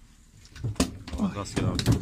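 Speech: people talking, starting about half a second in after a brief quiet moment, with a few sharp clicks among the words.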